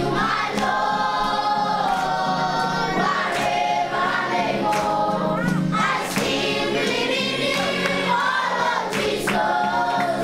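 A choir of many voices singing a Christian song, holding long notes.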